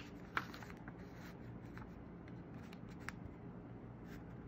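Paper pages of a printed cinema guide booklet being handled and turned: a few brief crisp rustles and clicks, the sharpest right at the start and just under half a second in, another about three seconds in, over a low steady background hum.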